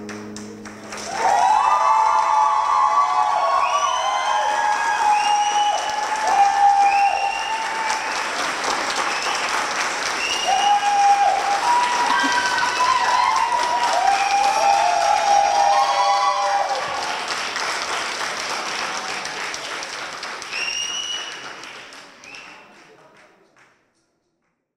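The last acoustic guitar note dies away, then an audience applauds loudly with high cheering whoops over the clapping. The applause fades out near the end.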